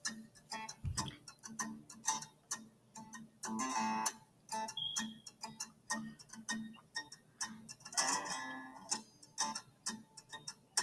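Light background music: plucked string notes over a steady ticking beat.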